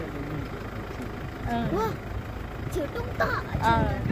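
A woman talking over a steady low rumble, the engine and road noise of a moving vehicle.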